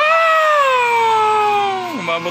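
A long, high-pitched vocal cry that jumps up sharply, then slides slowly downward for about two seconds before breaking off.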